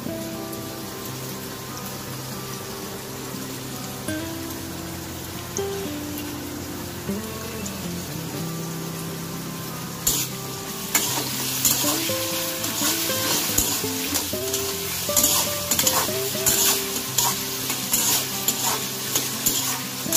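Background music with a melody. About ten seconds in, diced potatoes start sizzling loudly in hot oil in a wok, with a spatula repeatedly scraping and stirring through them.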